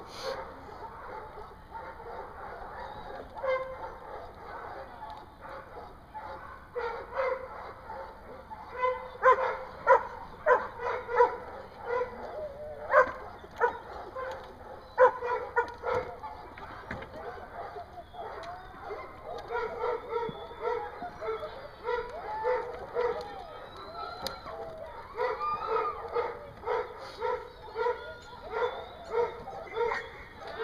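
Search-and-rescue dog barking: scattered loud barks from about a third of the way in, then steady repeated barking at roughly one bark a second to the end, the bark alert a search dog gives on finding a hidden person.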